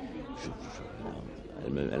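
A short pause in a man's speech, filled with low background noise and faint voice sounds, before he speaks again near the end.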